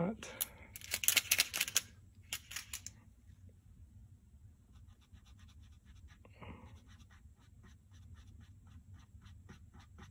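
A yellow paint pen being shaken, a quick loud rattle of clicks over the first few seconds, then faint rapid tapping, about five a second, as its tip is worked into the raised lettering of a plastic engine cover.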